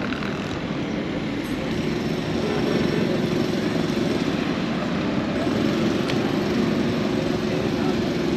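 Steady road traffic and a vehicle engine running close by, growing a little louder after about three seconds.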